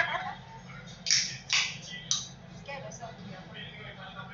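Aluminium root beer can being cracked open: three short, sharp hissing pops about a second in, half a second apart, then a few faint ticks.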